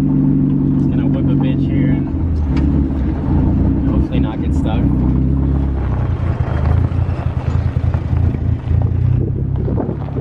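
Mazda Miata's engine running while driving, its note dropping after about two seconds as the car slows, then a low idle-speed rumble as it rolls over a gravel driveway with the tyres crunching on the stones.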